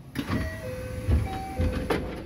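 Train's sliding passenger doors opening at a station stop: a sudden mechanical rush with low thumps, a few short steady electronic tones, and a sharp click near the end.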